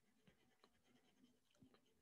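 Faint scratching of a black colored pencil on paper: quick, irregular shading strokes.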